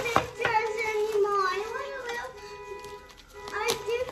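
A child's high voice, chattering and sing-song, over music, with a few sharp crackles of plastic wrapping being handled near the start and again near the end.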